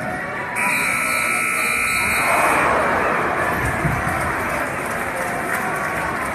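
Gymnasium scoreboard horn sounding once, a steady buzz lasting about a second and a half, followed by loud crowd noise in the gym.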